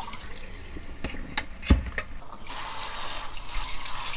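Soaking water splashing out of a stainless steel bowl into a kitchen sink, with a few sharp knocks, the loudest a little under halfway through. From a little past halfway, a kitchen tap runs steadily into the bowl to rinse the soaked semi-dried fish.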